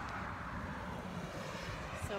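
Steady outdoor background noise: a constant rush with a low rumble beneath it, unchanging across the moment.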